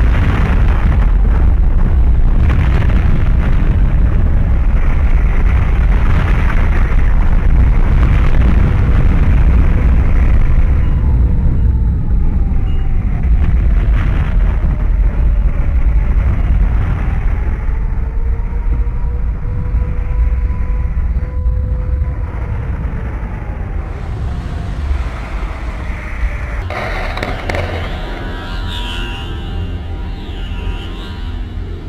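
Loud, continuous deep rumbling of a landslide, with a mass of rock and earth sliding down into water; the rumble eases off near the end.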